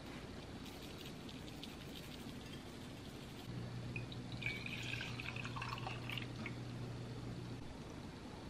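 Milk poured from a stainless steel pitcher into a glass mug, a splashing trickle starting about halfway through and lasting a couple of seconds, over a low steady hum. Before the pour come a few faint ticks from a spice shaker.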